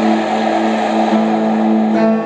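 Guitar played through effects, holding a sustained chord that drones on, with a wavering, pulsing low note under a hissy wash.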